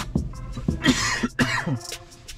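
A man coughing, two rough coughs about a second in, over faint background music with a steady beat.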